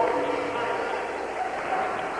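Spectators' voices in a gymnasium: several drawn-out calls overlapping, with no clear words.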